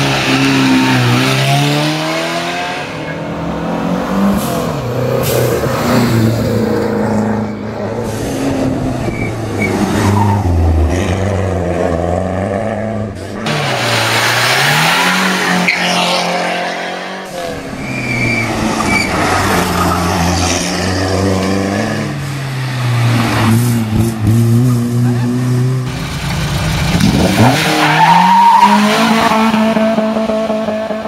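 Classic rally and competition cars accelerating hard up a hill-climb course one after another, each engine revving up and dropping in pitch at its gear changes as the car passes close by. The sound swells and fades several times as successive cars go past.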